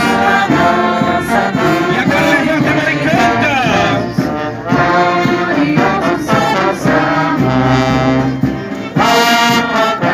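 Marching brass band of trombones, euphoniums and tubas playing a tune loudly, in short notes that change in quick succession, with a few sliding notes.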